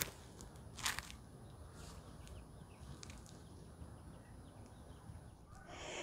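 Quiet outdoor background with a few faint, brief rustles and scrapes, the clearest about a second in.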